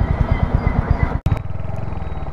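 Royal Enfield Hunter 350's single-cylinder engine running while riding, its exhaust beats coming at about a dozen a second. The sound cuts out for an instant just over a second in, then the same beat carries on.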